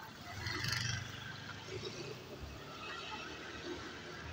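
City street traffic noise: a passing vehicle's low engine rumble swells briefly about half a second in, then eases into steady street noise.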